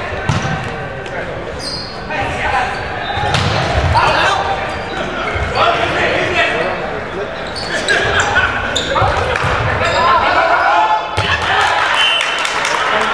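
Indoor volleyball rally in a reverberant gym: players' shouts and calls over the sharp smacks of the ball being hit and bouncing.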